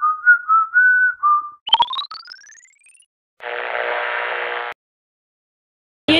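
Sound effects of an animated video intro: a short high melody of several notes, then a couple of clicks and a rising sweep, then about a second of dense buzzing.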